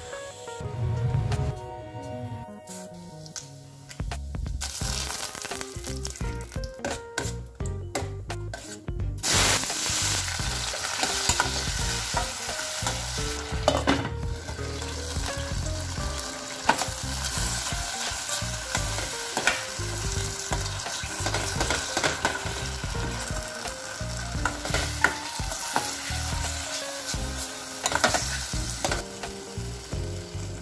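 Chopped tomatoes sizzling in hot oil in a steel kadai, with a steel ladle stirring and scraping against the pan. The sizzle starts suddenly about nine seconds in and then runs steadily, broken by sharp clicks of the ladle on the metal.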